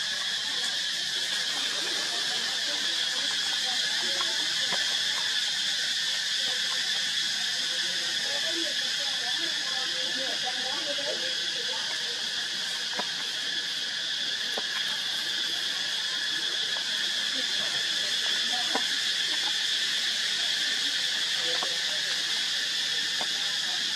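Steady, high-pitched chorus of insects droning without a break, with faint murmuring voices and a few small clicks underneath.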